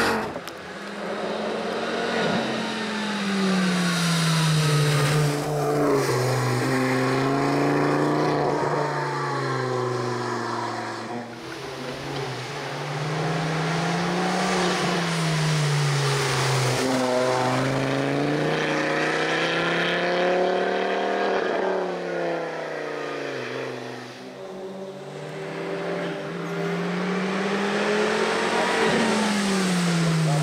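Ford Focus ST hill-climb race car's engine revving hard, its pitch climbing under acceleration and dropping again several times as it lifts and shifts for the bends, over a few passes as it approaches and goes by, with tyre hiss from the wet road.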